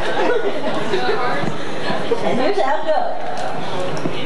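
Chatter of several people talking at once in a crowded room, with no music playing.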